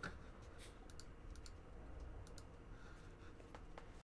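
Faint, scattered key clicks, a handful of separate taps over low room hum.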